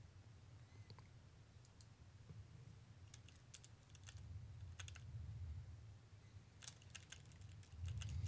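Near silence: faint, scattered computer keyboard key clicks over a low hum.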